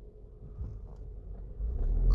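A low rumble that grows louder near the end, under a faint steady hum.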